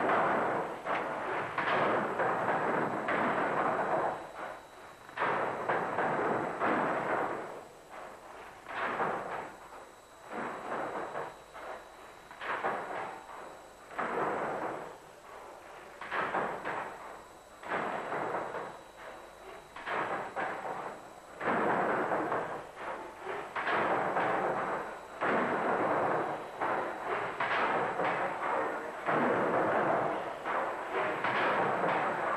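Papplewick's single-cylinder drop-valve condensing beam engine and its valve gear at work: unpitched mechanical and steam noise that rises and falls in irregular surges every second or two, fuller and more continuous in the last third.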